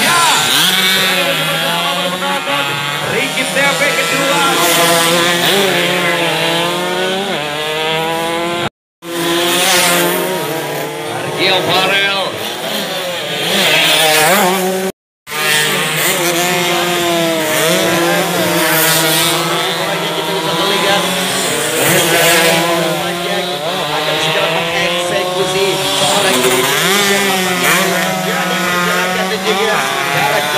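Two-stroke underbone racing motorcycles pass one after another at full throttle, their high-pitched, buzzing engines rising and falling in pitch as they rev. The sound cuts out twice, very briefly, about nine and fifteen seconds in.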